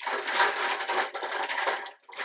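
A hand rummaging among small clear plastic capsules in a fabric-lined basket, the capsules clattering together in a steady, dense rattle.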